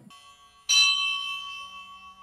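A bell struck once, about two-thirds of a second in, ringing with several clear steady tones that fade over about a second and a half.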